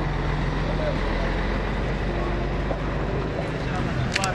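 A vehicle engine idling steadily, under the indistinct talk of a crowd.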